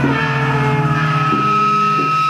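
Live small-band music: trumpet playing over bass guitar, with a long high trumpet note held from about halfway in above a steady low bass note.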